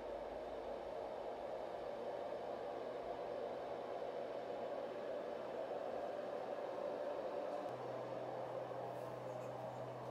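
Steady, even hiss with a faint low hum underneath; the hum grows a little louder about eight seconds in.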